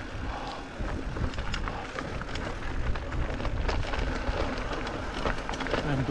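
Mountain bike rolling down a dry, stony dirt trail: the tyres crunch and crackle over gravel and rocks, and the bike rattles and clicks throughout, over a steady low rumble of wind on the microphone.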